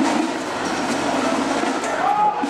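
A marching band playing loudly, heard as a steady, dense wash of sound with no clear beat.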